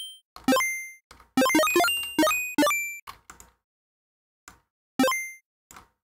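Chiptune blips from a Sytrus square-wave synth patch: short notes that fade quickly, each jumping up in octave steps as its stepped pitch envelope plays out. Two single blips, then a quick run of about six, then one more near the end, with a few faint clicks in the gaps.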